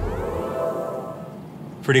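Synthesized start-up sound of a BMW 5 Series plug-in hybrid: a rising electronic sweep that settles into a sustained tone and fades away.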